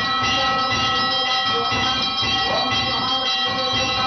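Temple bells ringing without a break, a dense, steady ring of many overlapping metallic tones with a rough pulsing underneath.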